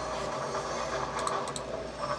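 Railway train running, a steady rumble with a few faint clicks about a second and a half in.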